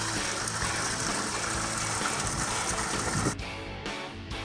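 Spring water running steadily through a stone wash-trough fed by fountain spouts. A little past three seconds in, the water sound cuts off and strummed guitar music begins.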